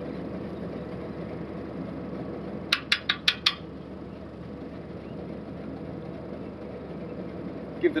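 Small plastic spray-nozzle fittings on a boom spray clicking about five times in quick succession, a little under three seconds in, as a blocked nozzle is worked loose for cleaning, over a steady machine hum.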